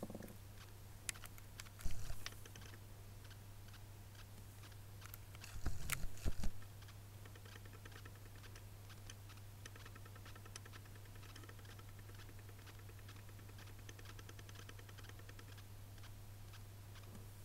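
Faint handling noise: small clicks and ticks of hands moving a mascara wand close to the microphone, with two louder bumps about two and six seconds in, over a steady low hum.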